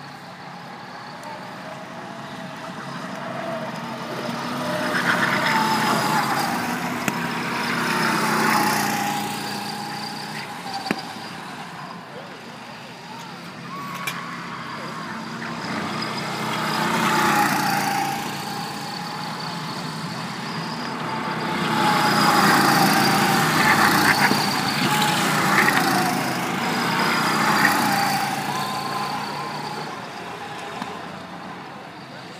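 Several go-kart engines running around the track. The sound swells as karts pass close and fades as they draw away, several times over, with the engine pitch rising and falling as the drivers work the throttle.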